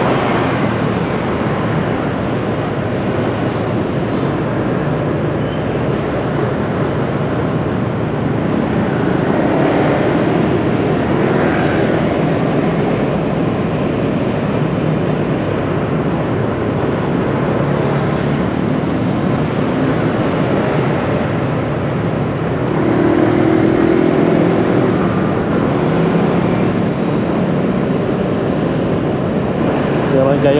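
Dense city street traffic heard from within the flow: many motor scooters and cars running together in a steady mix of engine and road noise, with one engine note rising above the rest for a couple of seconds near the end.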